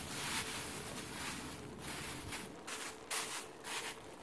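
A thin plastic bag crinkling and rustling in irregular bursts as a hand presses and tucks it down over a pot of rice.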